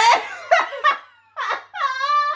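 Young women laughing together in a run of short bursts of giggling.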